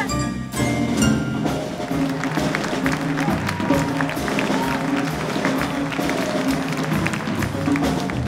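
Jazz piano trio music of piano, double bass and drum kit, with a moving bass line under a steady beat of short drum and cymbal ticks.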